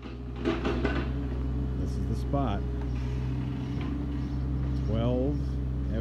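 Steady low hum of a car engine idling, with a person's voice sounding briefly twice, a few seconds apart.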